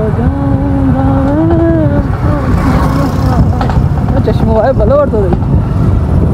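Wind buffeting a phone microphone, a heavy steady rumble. Over it a voice holds a long wordless sound in the first two seconds and gives a short call about five seconds in.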